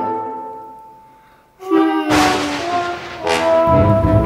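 Background music: a held note fades out, then about a second and a half in a brass-led orchestral phrase starts, with percussive hits.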